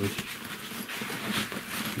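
Irregular rustling and scuffing of a hand rubbing and pressing over the fabric of a snowmobile's soft cargo bag.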